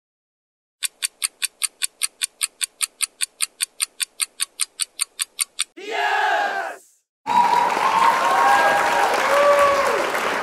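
Countdown-timer clock ticking, fast and even at about six ticks a second for some five seconds, then a short sound effect as the answer is revealed, followed by a few seconds of crowd cheering.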